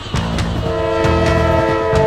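Locomotive horn blowing one held chord of several notes, starting about half a second in, over a low rumble.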